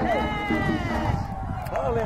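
An announcer's voice over a public-address system, in long drawn-out calls that rise and fall in pitch, once at the start and again near the end.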